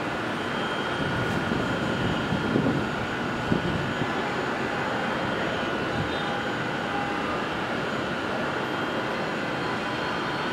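Steady, distant city traffic din heard from high above the streets, with a few faint steady tones over it and a couple of brief louder sounds between about two and four seconds in.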